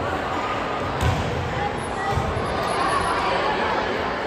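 Spectators' voices and chatter echoing in a school gym during a volleyball rally. A single sharp smack of the volleyball being hit comes about a second in, with a few duller thuds of the ball and players' feet on the hardwood.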